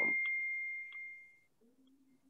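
A single high chime, struck once, ringing on one clear pitch and fading away over about a second and a half, with a couple of faint clicks.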